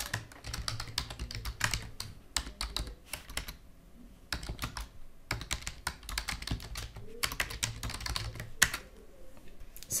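Typing on a computer keyboard: quick runs of keystrokes with a short pause about four seconds in.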